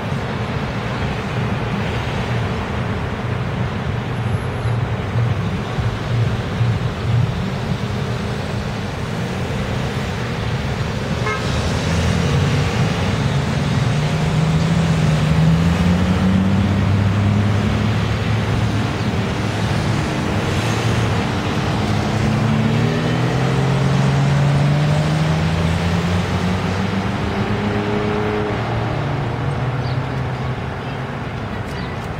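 Steady street traffic noise, with vehicle engines rising in pitch as they accelerate, once around the middle and again later on.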